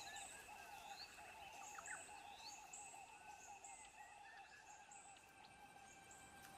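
Faint woodland ambience of birds calling: a continuous run of quick repeated low notes under short high chirps and a few brief whistled glides.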